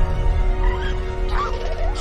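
Film-trailer score with a deep low drone and a held note. About one and a half seconds in comes a short chirping creature call, a baby velociraptor's sound effect.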